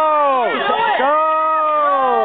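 Voices giving long, drawn-out shouts to urge a jumper on, one after another.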